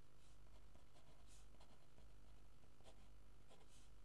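Faint scratching of a felt-tip pen writing on paper, in a series of short strokes.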